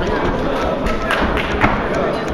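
Boxing gloves landing punches: a few sharp thuds, the loudest a little past halfway, over the steady din of a crowd's voices in the hall.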